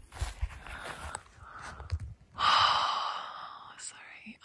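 A person's long breathy exhale, like a sigh, about halfway through, fading away over about a second, after a faint low rumble.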